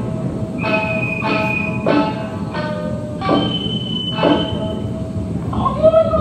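Traditional Japanese dance accompaniment: plucked shamisen notes struck roughly once a second, each ringing out, with long held higher tones drawn over them.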